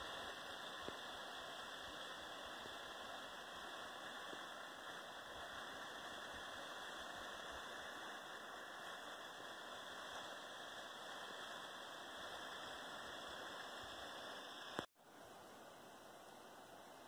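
Faint steady rushing of a small snowmelt waterfall heard from across the slope, a constant even hiss that drops out briefly near the end and comes back a little fainter.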